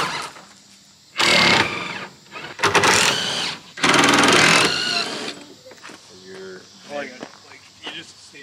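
Cordless impact wrench run in three short bursts of about a second each, loosening the clamp bolts that hold a truck topper to the bed rails. Quieter voices follow.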